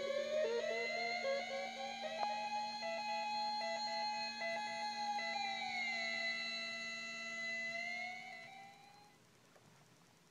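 Homemade MFOS Weird Sound Generator, an analog noise synth, putting out a buzzy electronic tone over a steady low drone as its knobs are turned. The pitch glides up over the first two seconds and holds with a choppy pulsing. It slides down again about six seconds in and fades away shortly before the end.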